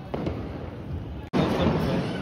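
Diwali firecrackers going off around the area, a dense crackling of pops and bangs that cuts out for an instant about a second in and comes back louder.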